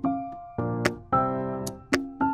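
Background music: keyboard chords that start sharply and fade away, with a few sharp clicks.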